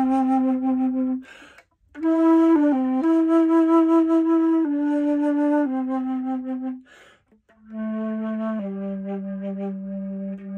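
Schiller alto flute played slowly: a run of long held notes low in its range, with two short breaks for audible breaths, about a second and a half in and again about seven seconds in. The player himself calls his playing very out of tune.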